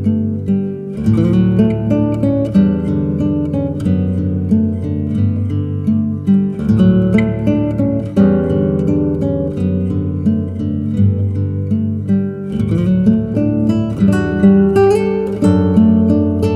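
Solo acoustic guitar music, a relaxing, romantic piece of plucked and strummed notes over a steady bass line.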